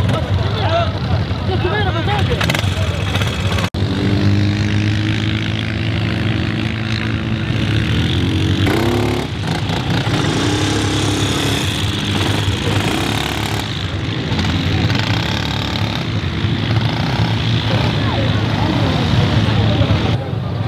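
Quad bike engines running, a steady low hum, with one revving up about nine seconds in, under a babble of voices.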